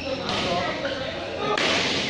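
Badminton rackets striking the shuttlecock during a fast doubles rally, with sharp hits and swishes in a large hall.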